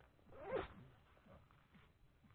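A short rasping swish, lasting about half a second, that swells and cuts off near the start, over faint quiet background.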